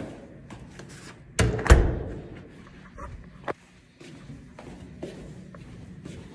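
A door closing with a loud double thud about a second and a half in, amid footsteps, followed a couple of seconds later by a single sharp click.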